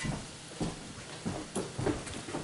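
A few faint knocks and rustles of handling over a quiet room.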